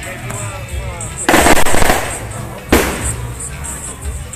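Firecrackers going off: a rapid crackling string of bangs lasting under a second, then a single loud bang about a second later, over background music.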